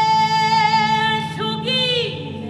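A woman singing a worship song, holding one long note with vibrato over a soft sustained accompaniment; a little after a second in the note breaks off and she starts a new, falling note.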